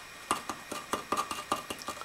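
Quick, irregular run of light metallic clicks and taps, about a dozen in a second and a half, as a valve-lapping stick with a suction cup is fitted onto a valve in a small engine's cylinder head, ready for lapping.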